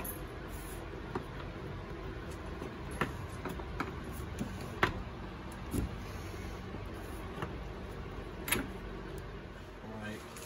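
Light clicks and knocks of a plastic ATV air box and its rubber intake boot being pushed and shifted into place by hand, the sharpest about five seconds in, over a steady low hum.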